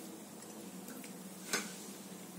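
Quiet room tone with one short click about one and a half seconds in.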